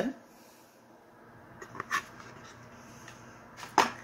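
Handling noise of cardboard oracle-card deck boxes being put down and picked up. A few faint taps come about halfway through, then one sharp knock near the end.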